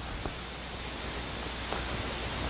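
Steady background hiss with a low hum. It is broken by a couple of faint light taps as a serrated slicing knife scores pork chops on a plastic cutting board.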